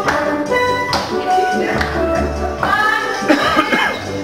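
Several steel pans played together with sticks: a rhythmic tune of struck, ringing metallic notes, with low bass notes coming in twice.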